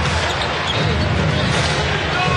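Steady arena crowd noise during live basketball play, with a ball being dribbled on a hardwood court.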